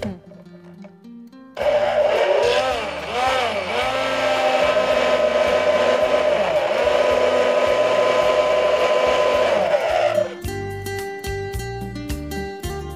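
Electric hand blender running in a jug of orange and coconut-water juice. It starts about a second and a half in and its pitch dips and rises a few times as it churns the liquid. It then runs mostly steady until it stops about ten seconds in.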